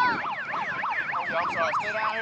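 A siren yelping, its pitch sweeping quickly up and down about four times a second.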